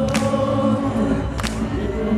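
Live rock band playing in a stadium, recorded from the crowd: a male lead voice sings over layered, choir-like backing vocals and a sustained synth bed, with a sharp beat roughly every second and a quarter.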